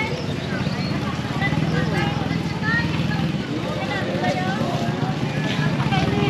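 Market street hubbub: scattered voices of shoppers and vendors over a small motor vehicle's engine running steadily nearby.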